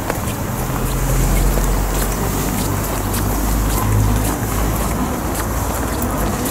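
Wind buffeting the camera microphone: a low rumble that gusts through the first four seconds and then eases, with light irregular ticks over it.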